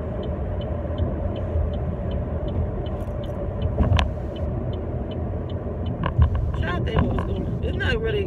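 Steady engine and road rumble inside a moving car, with a turn signal ticking about two and a half times a second through the first half. A single sharp click comes about four seconds in, and a voice hums or murmurs near the end.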